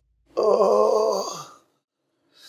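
A man's drawn-out groan with a wavering pitch that sinks away at the end, the moan of someone waking in pain with a bad headache.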